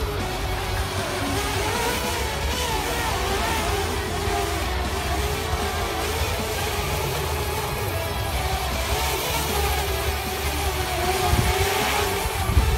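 Parrot Bebop 1 quadcopter flying overhead, its propellers whining at a pitch that wavers up and down as the motors adjust, with wind rumble on the microphone.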